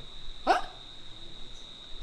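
A man's single short "Huh?" about half a second in, rising in pitch. Around it, quiet room tone with a faint steady high-pitched whine.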